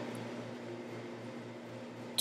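Quiet room tone: a steady low hum over faint hiss, with no distinct sound.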